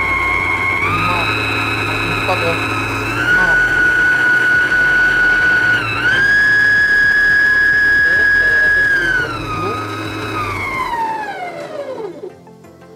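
Mito MX100 stand mixer's motor running with the wire whisk turning in an empty stainless steel bowl, a high whine that steps up in pitch three times as the speed dial is turned higher. Near the end it slows and falls in pitch as the dial is turned back down.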